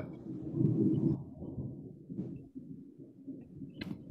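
A low, muffled rumble through a video-call microphone, loudest in the first second and then fading, with a sharp click near the end.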